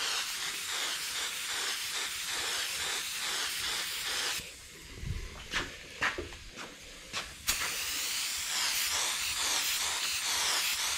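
Compressed-air paint spray gun hissing as it sprays: one pass of about four seconds, then a break of about three seconds with a few clicks and knocks, then spraying again.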